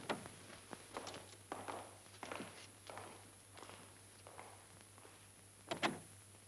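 A small group marching in step, one footfall about every two-thirds of a second, fading as the marchers move away. A sharper knock comes near the end.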